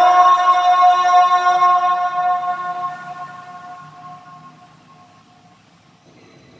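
A muezzin's high held note on 'hayya 'ala al-falah' in the call to prayer (adhan), sung in maqam Rast through a microphone. The note holds steady for about two seconds, then fades away over the next few seconds in the large hall.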